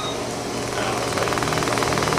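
Surgical laser firing in rapid pulses, a fast even buzz that sets in about half a second in, over a steady low hum.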